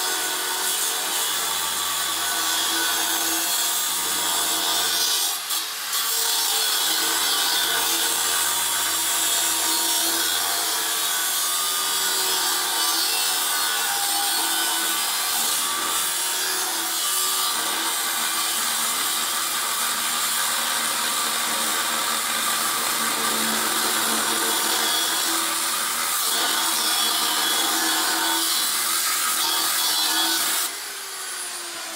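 A 9-inch angle grinder with a metal cutting disc cutting through a steel RSJ beam: a steady, loud grinding with the motor's whine under it, easing off briefly about five seconds in.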